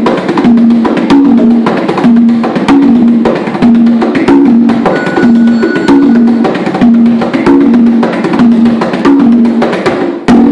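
Congas played by hand in a Cuban rumba rhythm: sharp strokes over open tones on two pitches, repeating in a steady cycle.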